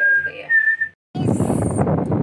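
A person whistling a tune in held notes that step up and down, breaking off about a second in. After a brief gap, steady noise and rumble from inside a car fill the rest.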